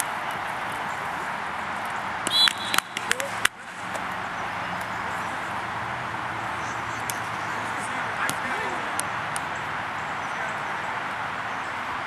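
Open-air ambience of a playing field: a steady hiss with indistinct voices of players. About two and a half seconds in, a brief cluster of loud sharp knocks with a short high tone, then a momentary drop in sound.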